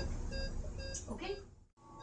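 Short electronic beeps repeating at several pitches, with a brief voice about a second in. The sound cuts out abruptly near the end.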